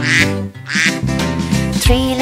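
Two cartoon duck quacks, one at the start and one a little under a second later, over the steady instrumental backing of a children's song.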